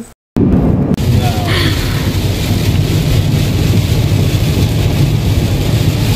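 Pouring rain on a car's roof and windshield, heard from inside the cabin while driving on a wet road: a loud, steady rush with a deep low rumble. It starts abruptly just after a short dropout.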